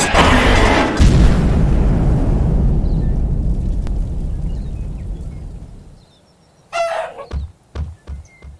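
A deep boom about a second in that rumbles on and fades away over several seconds. After a brief quiet, a short squawk-like call and then a few dull thumps.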